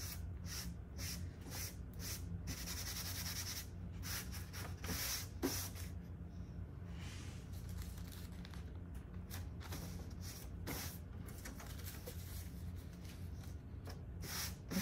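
Hands rubbing and smoothing a sheet of rice paper down onto glue-coated window glass: a run of short, irregular brushing and rustling strokes over a steady low hum.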